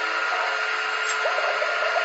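Steady whirring hiss with a few faint steady tones beneath it.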